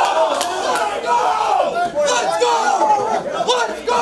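A group of hockey players shouting and whooping in celebration of a win, many excited male voices overlapping, with a few sharp smacks among them.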